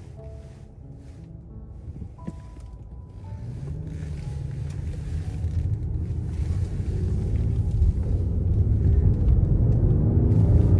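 Inside the cabin of a 2016 Rolls-Royce Wraith, the twin-turbo V12 and road noise grow steadily louder from about three seconds in as the car pulls away and accelerates. The engine note rises with road speed.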